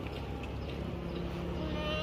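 Low, steady hum of an idling vehicle engine, with a faint high voice rising in pitch near the end.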